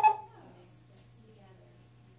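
A short electronic beep from the speaker of an Auvi-Q epinephrine auto-injector trainer, right at the start, then near quiet with a steady low hum.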